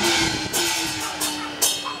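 Taiwanese opera stage accompaniment: a long held note sliding slowly down in pitch while cymbals crash three times, the third the loudest.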